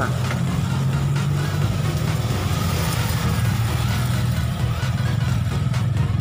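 A steady low engine hum, like a motor vehicle idling nearby, with no change in pitch.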